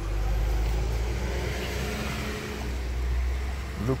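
Low, steady rumble of a motor vehicle engine running, dipping briefly about halfway through.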